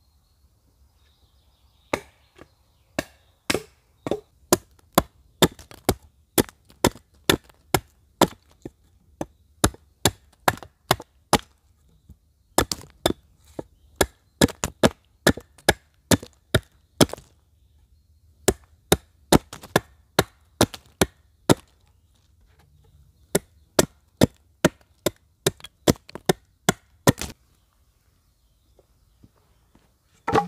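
Hatchet chopping the end of a wooden pole to a point against a log chopping block: a long run of sharp chops, about two a second, broken by a few short pauses.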